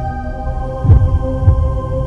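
Suspense film score: a sustained organ-like drone with a low heartbeat-like double thump, two beats just over half a second apart, about a second in.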